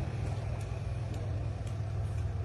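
Steady low rumble of an idling car engine, with faint street background.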